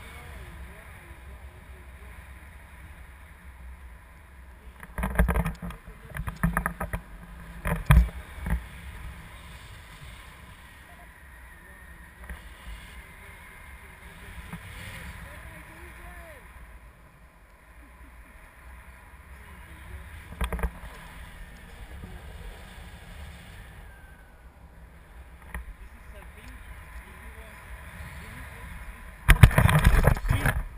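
Wind rushing over an action-camera microphone in flight under a tandem paraglider: a steady low rumble with louder, uneven buffeting gusts about five to nine seconds in, once around twenty seconds, and again at the very end.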